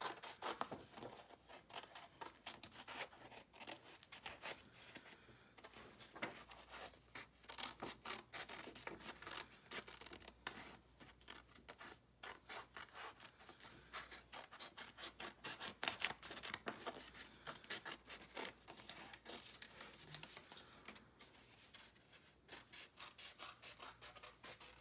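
Small red-handled scissors cutting through a paper sheet: faint, irregular snips in quick runs with short pauses between them.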